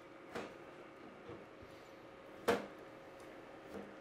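Chef's knife knocking on a cutting board as a red bell pepper is cut into chunks: a few separate knocks, the loudest about two and a half seconds in, over a faint steady hum.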